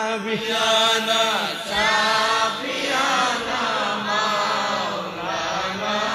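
A man's amplified voice chanting in a slow, melodic tune, holding long notes that slide up and down in pitch.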